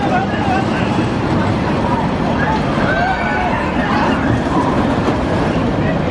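Steel roller coaster train running along its track in a loud, steady rumble, with riders' voices and shouts rising and falling over it.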